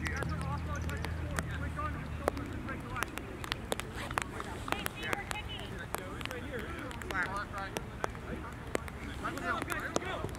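Faint, indistinct voices of players calling across an open field, with irregular sharp ticks throughout on the camera's plastic rain cover. A low steady hum fades out about two seconds in.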